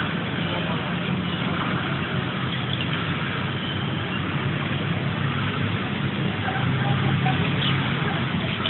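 Steady background hum of road traffic, an even wash of noise with no distinct events.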